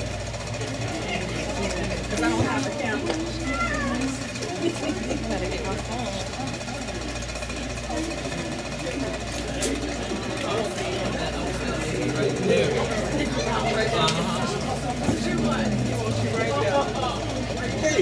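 Indistinct chatter of several people in a room, over a steady low hum.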